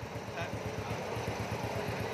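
Honda Wave 100's small air-cooled single-cylinder four-stroke engine idling with a quick, even putter of about a dozen beats a second. It runs smoothly and quietly, which the seller likens to an electric bike.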